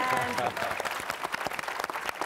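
Audience applauding: many hands clapping at once in a dense, uneven patter, with a voice trailing off in the first half-second.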